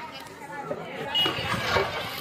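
Indistinct chatter of people talking, louder in the second half.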